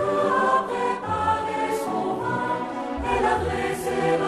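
Choir singing a Christian song in held, sustained notes.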